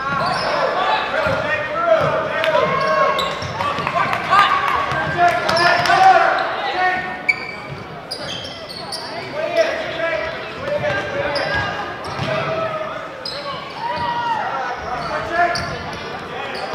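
A basketball being dribbled on a hardwood gym floor, with repeated bounces over a steady mix of voices from players and spectators talking and calling out.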